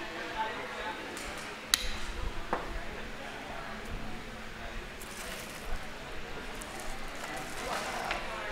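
Light rustling of stems and dried grasses as a large bouquet is handled, with a sharp click a little under two seconds in and a softer click shortly after.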